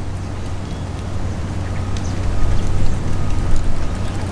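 Steady low hum under a constant outdoor background noise, with no distinct events.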